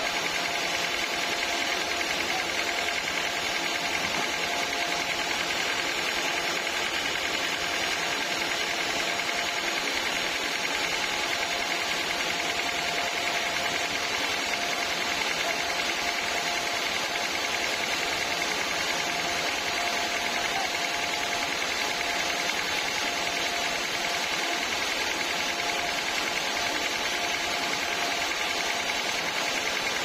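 Homemade sawmill's motor and blade running steadily with no cut, a constant mechanical hum with a faint steady whine.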